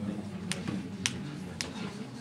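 Low murmur of voices in a room, with three sharp clicks about half a second apart.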